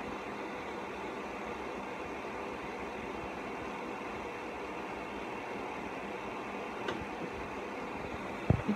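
Steady background hiss of room noise, with one faint tick about seven seconds in.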